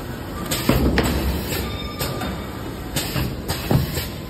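Automatic POF film sealing machine running: a low mechanical rumble with irregular clacks and knocks, loudest about a second in and again just before the end.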